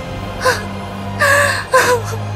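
A young woman's voice crying, with three short sobbing gasps over steady, low background music.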